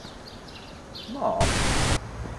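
A burst of even, static-like hiss lasting about half a second that cuts off suddenly near the end. Just before it there is a brief, rising voice-like sound.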